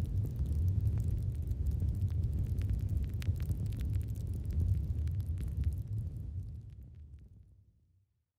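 Logo-reveal sound effect: a deep, steady rumble with scattered crackles, fading away over the last second or two.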